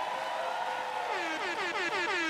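Audience applauding and cheering. About a second in, an air horn joins with several short blasts that each slide down in pitch.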